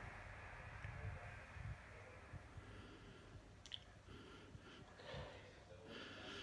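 Near silence, with faint breaths, soft handling thuds and one small click as a man sniffs and sips ale from a glass tankard.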